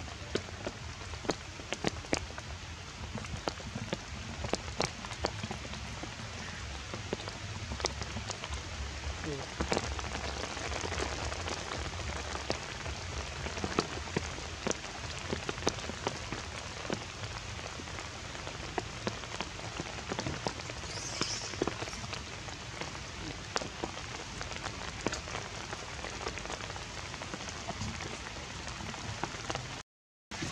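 Steady rain falling on forest foliage, an even hiss dotted with many scattered drop clicks.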